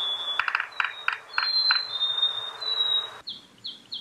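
A bird field recording played back: a sparrow's high, clear whistled notes, held level one after another, over a run of quick, uneven taps in the first two seconds that come further apart as they go. About three seconds in, the recording's background hiss drops away, leaving a few short chirps.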